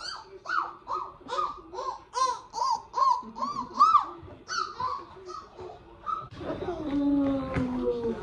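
A young child's voice making a quick run of short, high-pitched cries, about three a second, for the first few seconds. A woman starts talking from about six seconds in.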